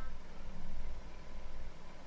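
Faint background noise, a low rumble under a light hiss.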